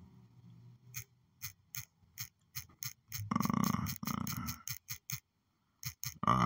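Key clicks from typing on a phone's on-screen keyboard: about fifteen short taps at an uneven pace, with a brief low vocal murmur a little past halfway.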